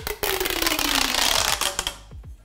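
Corrugated plastic pop tube toy being stretched, its folded ridges snapping open one after another in a rapid crackle of clicks, with a faint tone that falls steadily in pitch underneath.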